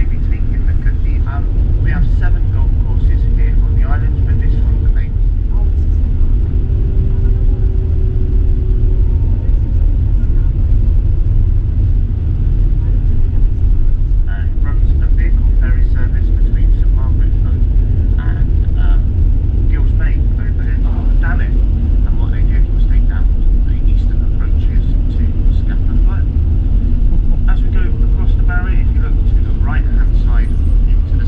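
Steady low road rumble inside a moving vehicle, with indistinct voices coming and going over it.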